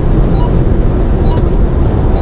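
Steady low rumble of a car driving at motorway speed, tyre, wind and engine noise heard from inside the cabin through a dashcam microphone.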